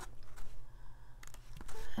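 Faint handling sounds with a few light clicks as a small tarot guidebook is picked up and opened, over a low steady hum.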